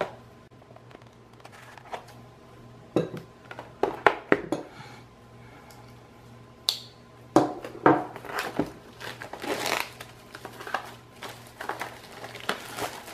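Plastic shrink wrap on a small boxed SSD being slit with a pocket knife and peeled away: scattered crinkling and crackling with sharp clicks, sparse at first and busier in the second half.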